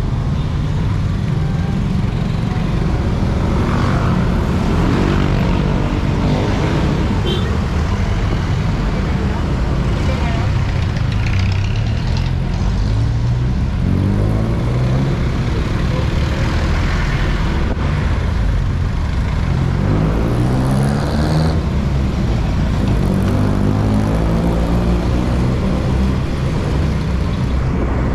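The riding motorcycle's engine rising in pitch several times as it pulls away and speeds up in slow city traffic, over a steady low rumble and the noise of surrounding vehicles.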